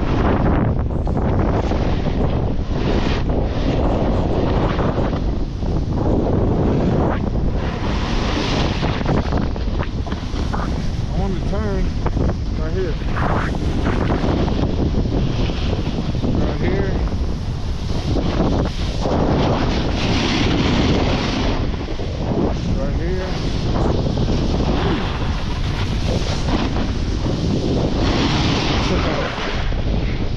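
Wind rushing over an action camera's microphone as a snowboard runs fast downhill, mixed with the steady hiss and scrape of the board's base and edges on packed snow.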